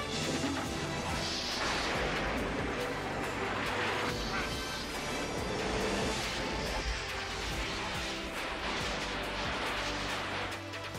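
Film soundtrack of a lightning strike: dramatic music mixed with electrical crackle and crash effects, held at a steady level.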